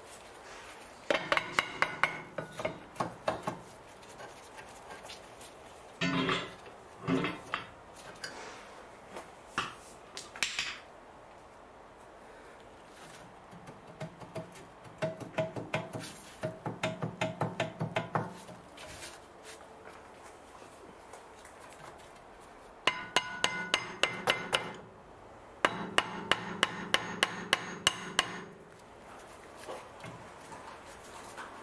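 Hammer blows on the rear brake disc of a 2007 Mercedes C-Class W204 to knock it loose from the hub. The blows come in several runs of quick strikes, a few a second, and the metal disc rings after each hit.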